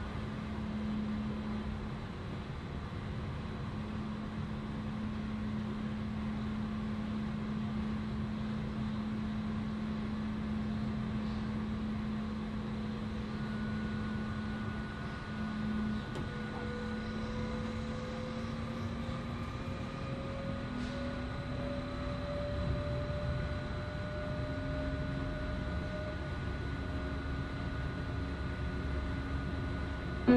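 Electric S-Bahn commuter train heard from inside the passenger car while running: a steady rumble of wheels on rail with an electric hum. Through the second half a faint whine slowly rises in pitch as the train picks up speed.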